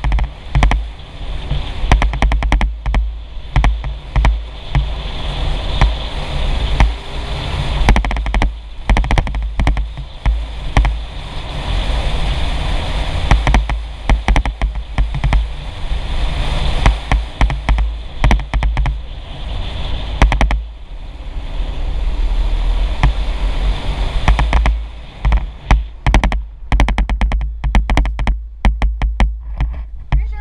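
Wind buffeting and rumbling on the microphone of a camera riding on a moving motorcycle, with many irregular knocks and thumps from the bumpy dirt road; the bike's engine is mostly buried under the wind noise.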